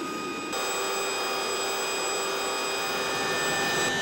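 CH-47 Chinook helicopter's turbine engines running: a steady whine of several high tones over a hiss, with no rotor beat. The sound shifts about half a second in and again near the end.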